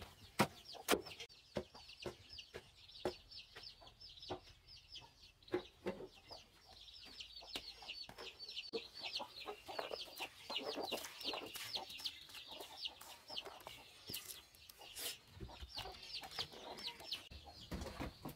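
Wooden pestle knocking into a wooden mortar, quick strikes at first and then sparser, while chickens cluck with a steady run of high, quick falling chirps. About ten seconds in, a soft rustle as the pounded mash is tipped onto a woven bamboo tray.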